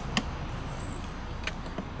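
Quiet outdoor background with a steady low hum, and a couple of faint clicks as a propane hose and its quick-connect fitting are handled.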